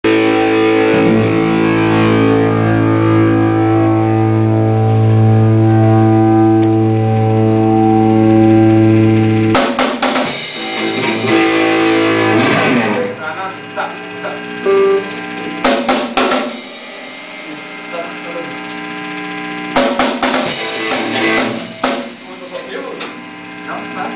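Electric guitar and bass guitar holding a loud sustained chord through their amplifiers, cut off about nine and a half seconds in by a drum-kit hit with a ringing cymbal, with another hit a few seconds later. The rest is quieter, with scattered drum and cymbal hits.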